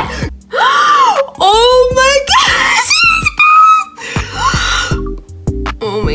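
A young woman's excited screaming: several long, high-pitched screams that rise and fall, over background music with a low beat.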